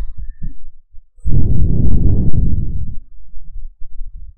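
A long, loud exhale blown onto a close microphone, a low rushing sound lasting nearly two seconds, with a few soft low thumps around it.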